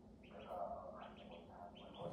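Ducklings peeping: a few short, high peeps in small groups spread through the two seconds.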